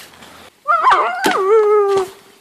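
Dog howling: a long call that starts about half a second in, wavers up and down, then holds one steady pitch.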